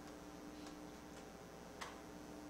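A few faint, irregularly spaced clicks, the loudest near the end, over a steady low electrical hum.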